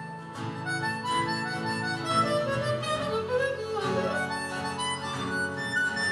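Harmonica played hand-cupped into a microphone, a melody of changing notes, over strummed acoustic guitar chords.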